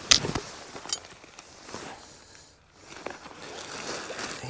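Nylon quilt shell and plastic bags rustling and crinkling as they are handled and stuffed into a pack. The loudest crinkle comes right at the start, then a softer rustle that pauses briefly just past the middle before picking up again.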